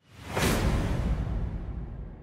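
Whoosh sound effect of a TV sports station's outro graphic, swelling about half a second in and trailing off into a low rumble that slowly fades.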